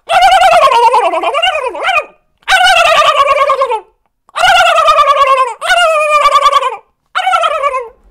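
A man loudly imitating a turkey: five gobbling calls in a row, each warbling and sliding down in pitch.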